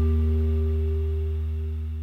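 The closing held chord of a post-punk rock song ringing out and slowly fading, its deep low notes the loudest part.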